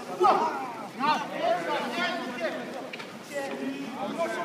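Several men shouting short, excited calls of encouragement over one another as a rugby maul is driven forward; the loudest shout comes just after the start.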